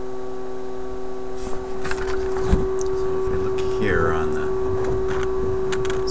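A steady hum from a powered-up Philips 922 vacuum-tube radio on the bench, with a faint voice over it and a thump about two and a half seconds in.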